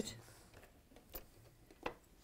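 A quiet room with two faint clicks, the first about a second in and the second near the end.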